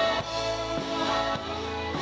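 A live rock band playing: electric guitars over bass and a steady drum beat.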